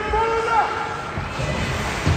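A spectator's drawn-out shout that rises in pitch, holds and breaks off about half a second in, over the hum of rink crowd noise with a few low thumps near the end.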